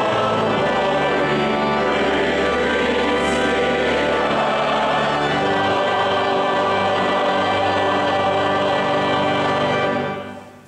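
Congregation and choir singing a hymn together, a full, steady sound of many voices. The final chord is held and then released at the very end, ringing on briefly in the hall.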